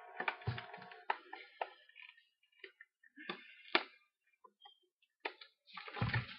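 Hard clear plastic capsule packaging being gripped and pried at by hand: a plastic creak in the first second, then quiet scattered clicks and taps with a few soft knocks as the case flexes and shifts in the hands.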